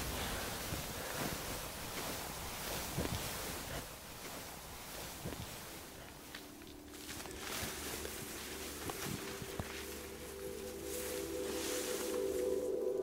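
Rustling in long grass with a few soft knocks, under quiet ambient music whose sustained low notes fade in during the second half and grow toward the end.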